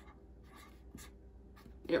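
Marker pen writing on paper: a handful of quiet, short strokes as a word is written out.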